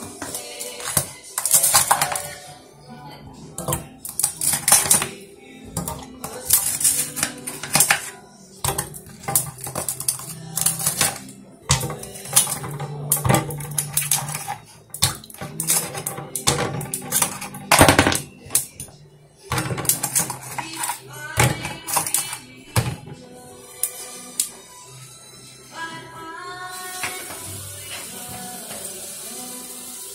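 Ice cubes dropped into a plastic pitcher of watermelon drink, clattering and knocking irregularly for about twenty seconds. Music plays underneath, and singing comes in over the last few seconds.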